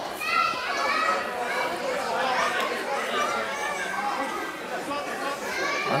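Many overlapping voices of spectators chattering and calling out in a large hall, some of them high-pitched.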